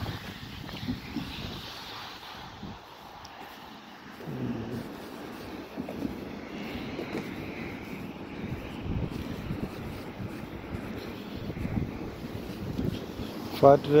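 Wind buffeting a phone microphone during a walk, with road traffic running alongside and footsteps on the walkway.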